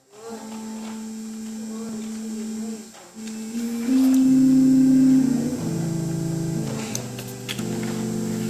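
Organ playing slow, held chords that change every second or so, soft for the first three seconds and loudest about four to five seconds in.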